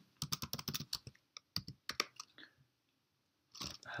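Computer keyboard typing: a quick, uneven run of keystrokes lasting about two and a half seconds, then it stops.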